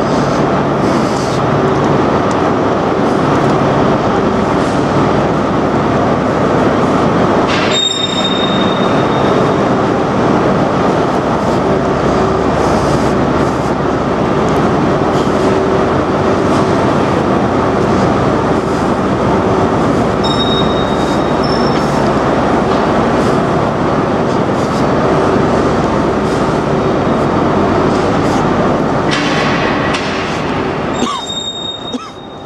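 Steady, loud hum of a stationary InterCity 225 electric train's on-board equipment at the platform, under a train shed. A sharp click with a brief high beep about 8 seconds in, and short high beeps again about 20 seconds in.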